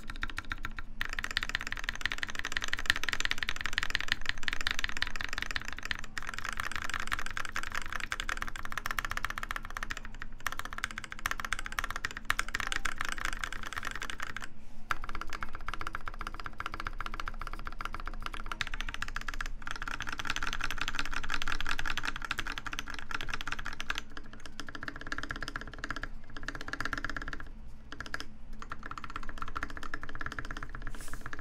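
Fast typing on mechanical keyboards: a dense, steady stream of keystrokes on a red TGR Alice with brass plate, lubed Gateron Black Ink switches and GMK keycaps, then on a red 60% keyboard partway through. A few brief pauses break the typing.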